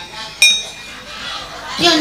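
A single sharp metallic clink with a brief high ring, followed near the end by a voice.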